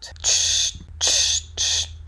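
Aerosol spray paint can sprayed in short bursts, three hisses in two seconds.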